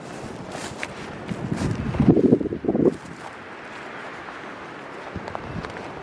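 Footsteps swishing through dry grass and weeds, with rustling that grows louder for about a second, around two seconds in.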